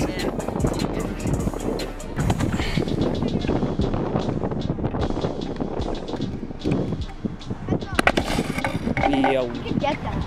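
Strong wind buffeting the microphone, a dense, gusting rumble.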